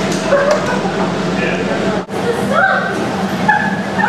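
Voices of several people talking and exclaiming at once, not clearly worded, with a rising high-pitched exclamation about two and a half seconds in and a steady low hum underneath.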